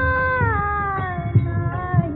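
A female Hindustani classical voice singing a Marathi abhang, one long held note that slides downward about halfway through. Beneath it is a steady tanpura drone, with a few low drum strokes.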